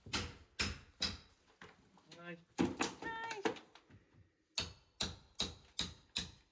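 Tool striking lath and plaster, sharp knocks coming roughly every half second as the old wall and ceiling lining is knocked off. Two short, high, wavering squeals come in the middle.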